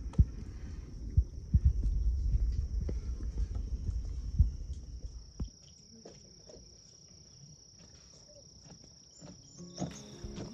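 Insect chorus, one steady high-pitched trill. Over the first five seconds it sits under a low rumble and a few sharp knocks, then carries on alone and quieter.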